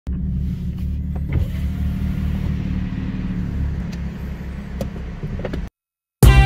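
A car engine idling with a steady low throb, with a few light clicks over it. It cuts off suddenly near the end.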